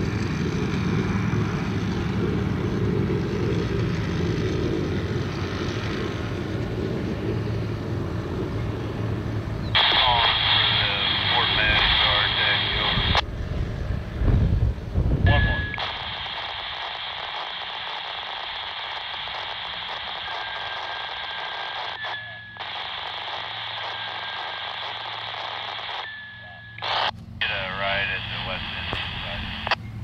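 A low rumble for about the first ten seconds. Then a handheld radio scanner: bursts of unintelligible radio voice with static and squelch, followed by a steady radio hiss broken by a few short beeps and brief dropouts.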